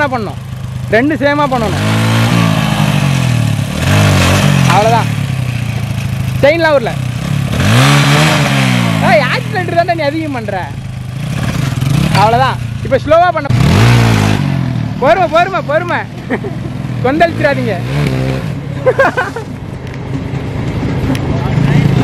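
Motorcycle engine revved again and again, its pitch climbing and dropping back with each throttle blip, with the loudest rasping surges at about 4, 8 and 14 seconds in.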